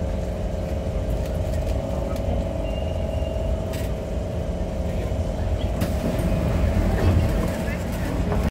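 Steady electric whine over a low rumble from a Kawasaki Heavy Industries C151 metro train's drive equipment, heard inside the car as it stops at a platform. A few sharp knocks come near the middle and later on.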